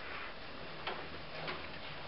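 Quiet room tone in a meeting room: a steady hiss and faint low hum, with two small clicks, one just under a second in and another about half a second later.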